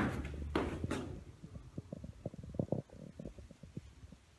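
A brief rustle at the start, then a run of faint, irregular soft knocks and thumps: people shifting and handling things on a wooden staircase.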